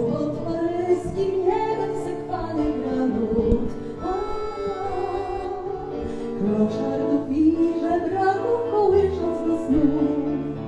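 A woman singing a song with instrumental accompaniment.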